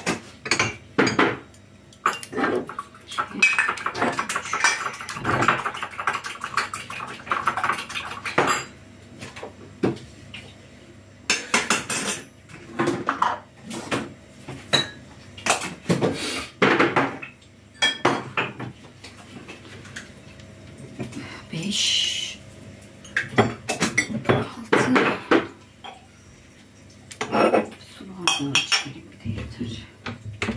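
Dishes, spoons and glasses clinking and clattering in many short, irregular knocks as they are handled and put out to set the table.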